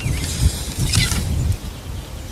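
Outdoor ambience: a low, uneven rumble of wind on the microphone that eases about one and a half seconds in, with a faint bird chirp near the middle.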